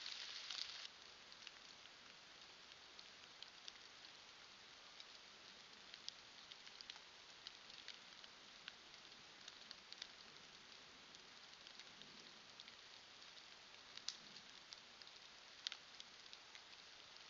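Faint rain dripping and pattering on leaves and the forest floor: a steady soft hiss broken by scattered light ticks, with a few louder drips near the end. For the first second a louder hiss plays, then cuts off abruptly.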